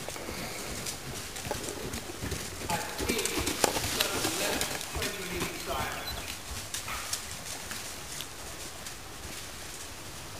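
A ridden horse trotting on a sand arena surface: soft hoofbeats with scattered short clicks. A person's voice is heard from about three to six seconds in.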